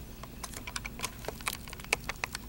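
Computer keyboard keys being tapped in irregular clicks, several a second.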